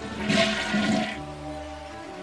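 Toilet flushing: a short rush of water lasting about a second, over background music.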